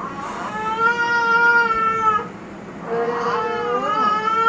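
An infant crying in two long, steady, high-pitched wails, the second starting about three seconds in.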